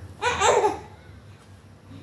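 Young baby's short laughing squeal, about half a second long, a quarter second in.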